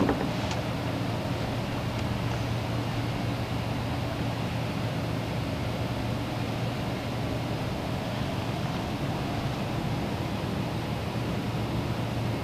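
Steady background hum and hiss, a low hum under an even noise, with a short knock right at the start.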